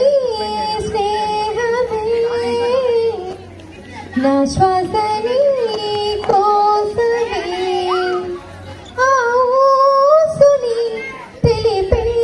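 A woman singing a song into a microphone, in three long phrases with held, wavering notes and short breaks between them.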